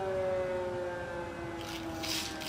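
An air-raid siren wailing, its pitch falling slowly as it winds down. A rustling noise comes in near the end.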